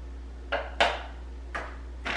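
A spoon knocking three times on the rim of a blender jar, short sharp taps as cocoa powder is shaken off it into the smoothie.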